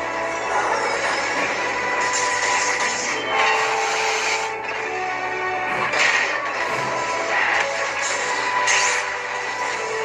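Film soundtrack music with held notes, broken by short crashing bursts about two, six and eight and a half seconds in, played through a television.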